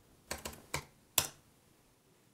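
Computer keyboard keystrokes as a password is typed at a sudo prompt: about five separate key clicks, the last and loudest a little over a second in.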